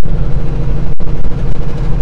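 Semi-truck's diesel engine droning steadily at cruising speed, heard inside the cab, with a very brief drop-out in the sound about halfway through.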